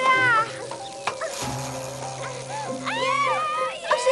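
Cartoon soundtrack music holding steady notes, with high-pitched wordless vocal cries from the characters. One burst of gliding cries comes right at the start and another about three seconds in.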